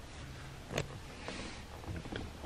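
Quiet room tone inside a truck cab: a steady low hum, with a single short click about three-quarters of a second in and a few fainter ticks.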